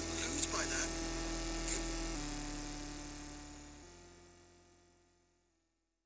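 Eurorack modular synthesizer drone: sustained pitched tones that step down twice, then fade out to silence a little after five seconds in.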